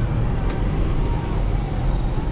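A combi minibus driving along a street, its engine and road noise heard steadily through the open side window.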